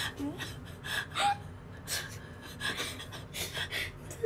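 A young woman's stifled laughter: a string of short breathy gasps and giggles, held back.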